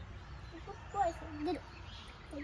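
A child's voice: short, soft, pitched utterances about a second in, without clear words.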